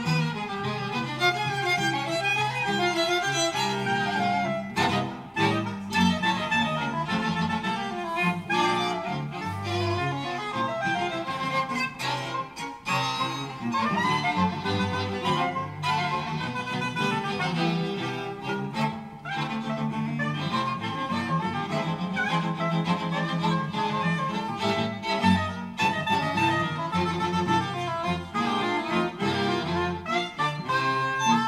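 A string quartet playing a busy, rhythmic passage of jazz-influenced chamber music, with violins and viola over cello, with brief breaks between phrases.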